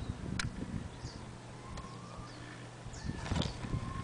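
Rustling and a few soft knocks from handling a handheld camera, near the start and again about three seconds in, over a faint steady low hum, with a few faint high chirps like birds.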